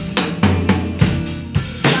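Acoustic drum kit played with sticks: snare and bass drum hits with cymbal wash, roughly two strong hits a second, the loudest about a second in and near the end. It plays along with a rock backing track that has a steady bass line.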